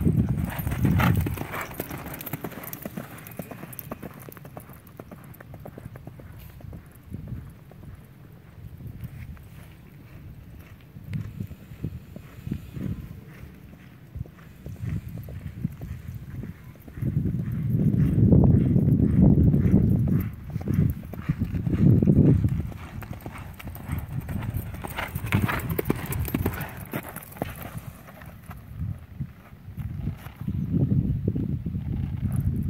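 Hoofbeats of a ridden horse on a dirt arena, a steady run of dull thuds. A louder low rumble comes in about seventeen seconds in and again briefly a few seconds later.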